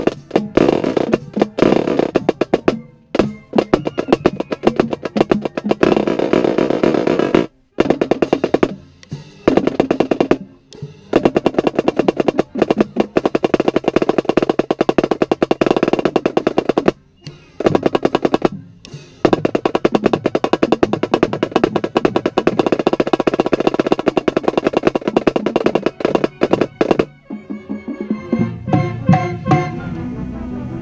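Marching snare drum played at close range with fast stick strokes and rolls, broken by several short pauses. The drumming stops about 27 seconds in, and a lower, sustained sound follows.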